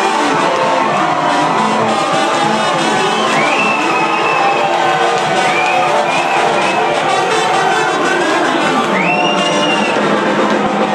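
Live band playing with trumpet and saxophone over drums and electric guitar, with the crowd cheering along.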